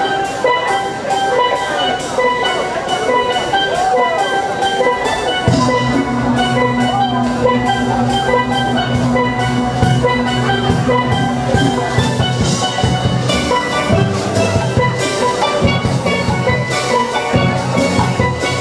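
Steelband playing live: steel pans ringing out a melody over a steady, quick percussion beat. Low bass notes come in about five and a half seconds in.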